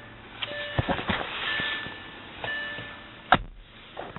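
Clicks from dashboard controls in a car's cabin over the hiss of the climate-control fan, with one sharp click near the end.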